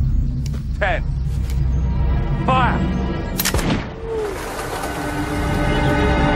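A single duelling pistol shot, one sharp crack about three and a half seconds in, after which tense orchestral music sets in.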